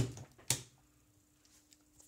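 Two sharp plastic clicks about half a second apart as a plug-in wall power adapter is handled and pushed into a mains socket, then near silence with a faint steady hum.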